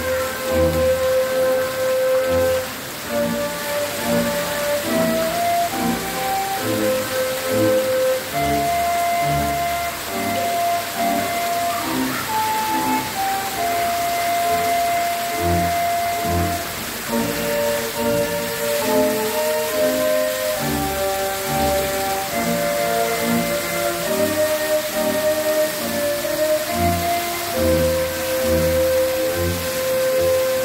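A melody of held notes with a bass line, playing over the steady hiss and patter of fountain jets splashing down.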